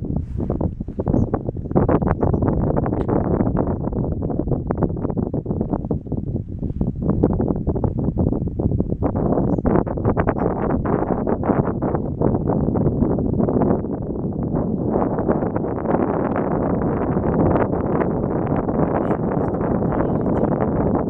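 Wind buffeting the camera's microphone while riding an open chairlift: a loud, low rush of noise that swells and dips in gusts.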